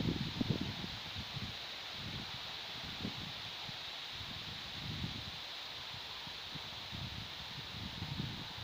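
Faint outdoor ambience: light wind with soft, uneven rumbles on the microphone over a steady faint hiss.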